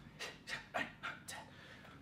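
A man's short, sharp breaths, about five puffs in two seconds, panting in time with quick shadow-boxing punches.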